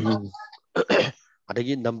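A man clears his throat in two short loud bursts during the first second, then resumes talking near the end.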